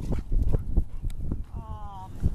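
A dog whines briefly near the end, a short cry that falls slightly in pitch, over a run of low scuffs from several dogs shuffling around close by.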